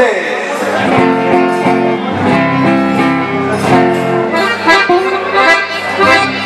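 Accordions playing a short chamamé phrase of held chords that change about every second, with guitar underneath.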